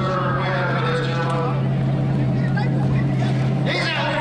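A steady low engine drone that holds an even pitch throughout, with indistinct voices over it near the start and end.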